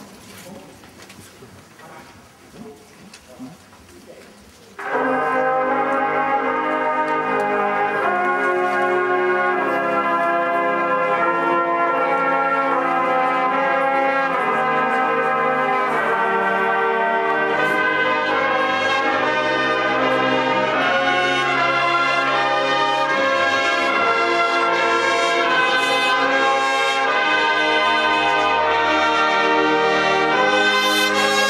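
Drum and bugle corps brass line coming in loud and all at once about five seconds in, after a few quiet seconds, then playing full sustained brass chords.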